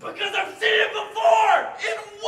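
Actors yelling and shouting in character in a staged horror-scene fight, several loud strained cries one after another with no clear words.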